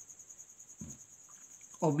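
A steady, high-pitched pulsing trill carries on in the background through a pause in speech. There is a brief low vocal sound about a second in, and speech resumes near the end.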